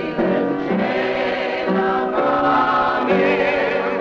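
A choir of mixed young voices singing in harmony, holding chords that change about once a second, with vibrato on some of the held notes.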